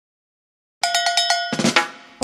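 Musical sting for an animated logo. After silence, a fast run of bright, ringing metallic percussion strikes, about ten a second, begins a little under a second in and dies away near the end.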